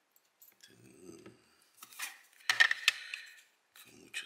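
Sharp metallic clicks and clinks from handling a small brass lock cylinder and circlip pliers while taking the lock apart, loudest a couple of seconds in.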